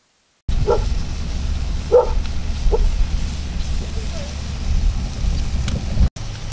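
Outdoor background noise: a steady low rumble with a faint hiss over it, starting abruptly about half a second in. Three short distant calls come in the first three seconds.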